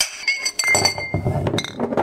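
Glasses clinking together several times in quick succession, each clink ringing on. The clinks start suddenly and are loud.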